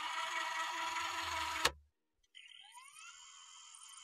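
Electronic music: a sustained synth chord with a hiss layered over it, which cuts off abruptly about 1.7 seconds in. Near silence follows, with only faint high tones.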